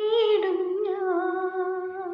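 Woman singing solo, unaccompanied, holding long notes that waver slightly, with a dip in pitch about half a second in.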